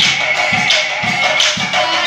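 Nagara Naam devotional music: nagara drums beaten in a steady beat with bright metal clashes on the strokes, over group singing.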